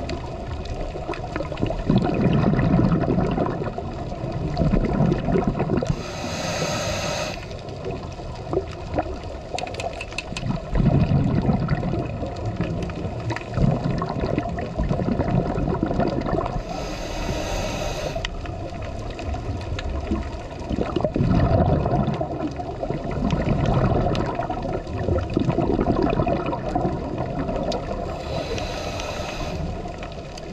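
Scuba diver breathing through a regulator underwater: a short hissing inhale three times, about eleven seconds apart, each followed by several seconds of rumbling, gurgling exhaust bubbles.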